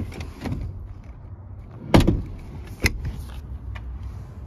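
Rear-cabin hardware of a Subaru Ascent being handled: a loud thump about two seconds in, then a sharp click just under a second later.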